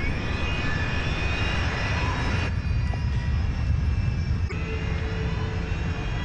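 Boeing 747 jet engine relighting and spooling up after an ash-induced flameout: a rising whine over a steady deep rumble.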